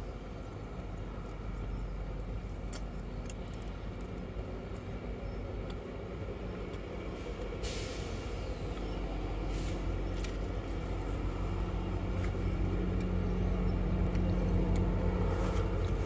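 Steady city traffic rumble with vehicle engines passing, growing louder toward the end, and a short hiss about eight seconds in.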